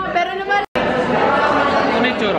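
Chatter of many voices talking over each other in a classroom. A sudden, brief dropout comes less than a second in, and after it the babble is denser and steady.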